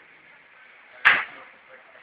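A single sharp impact about a second in, with a short decaying tail.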